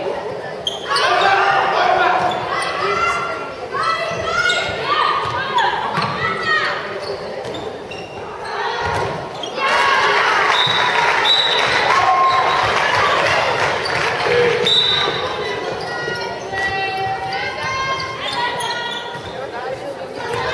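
A handball bouncing on the sports-hall floor during play, amid high voices shouting and calling across the echoing hall.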